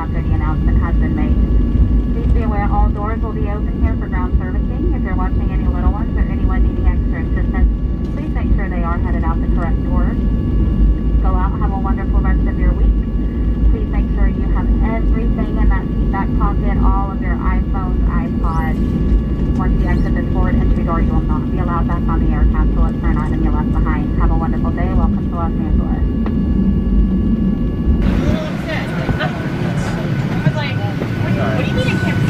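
Cabin noise of a Boeing 737-800 taxiing on its CFM56 engines at idle, heard from a seat behind the wing: a loud, steady low rumble with a faint steady whine on top, and indistinct voices over it. Near the end the rumble drops away sharply.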